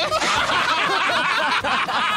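Several people laughing at once, with voices overlapping; it starts abruptly.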